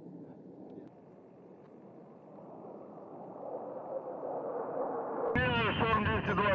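Jet engine noise from a formation of military jets flying over, growing louder for about five seconds, with a faint tone slowly falling in pitch. About five seconds in it is cut off by a sudden, louder passage with a voice.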